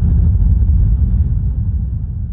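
Deep, low bass rumble with no beat, slowly fading out as a reggaeton DJ mix ends.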